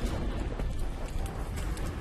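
Fire sound effect under a title card: a deep rumble with scattered sharp crackles.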